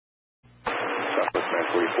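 Dead silence, then about half a second in a short hiss as the radio channel opens and an air traffic controller's voice comes in over aviation radio, thin and tinny as on a scanner recording.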